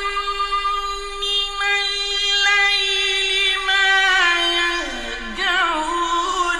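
Solo male voice chanting Quran recitation in the melodic mujawwad style, unaccompanied. It holds one long note for about four seconds, then slides down in pitch and quavers in ornaments near the end.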